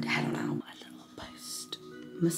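A woman whispering over soft background music; the fuller music drops away about half a second in, leaving fainter sustained tones and a single click.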